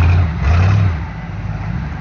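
Rock-crawling buggy's engine blipped twice with short bursts of throttle, a low rumble, the second burst longer, then settling back to a lower steady run as the buggy crawls over boulders.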